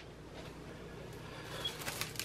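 Quiet room tone with a low hum; near the end, faint crinkling of plastic wrap as it is handled.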